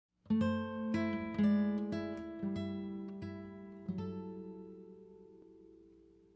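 Background music: an acoustic guitar plays a slow run of plucked notes, then lets a final chord ring and fade out over the last couple of seconds.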